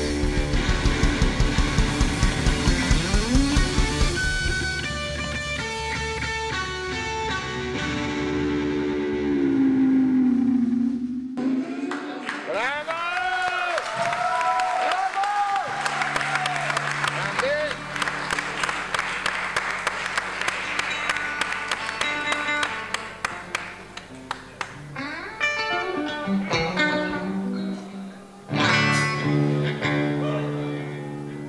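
Live rock trio closing out a song: distorted electric guitar from a Stratocaster-style guitar with drums hammering fast, regular hits and held chords in the first few seconds. After a sudden stop, the guitar swoops up and down in pitch in bar-bending wails, then goes on in loose sustained notes over bass, with a loud chord near the end.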